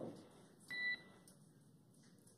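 A single short electronic beep, a steady two-tone pip, about two-thirds of a second in, the kind of tone that closes a transmission on the spacecraft-to-ground radio loop. Faint hiss from the communications channel under it.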